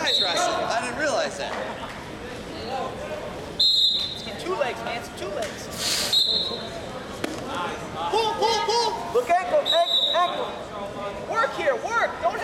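Voices of coaches and spectators calling out in a large hall, with several short high squeaks from wrestling shoes on the mat and a sharp thump about three and a half seconds in.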